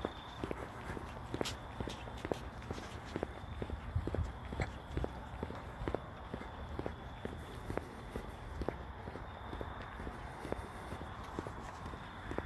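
Footsteps of a person walking at a steady pace on an asphalt path, about two steps a second, over a low rumble of handling or wind noise.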